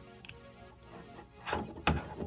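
Soft background music, with two small plastic clicks near the end as a toy light machine gun is pushed into an action figure's hand.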